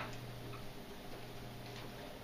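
Dry-erase marker writing on a whiteboard: a few faint taps and strokes over a steady low room hum.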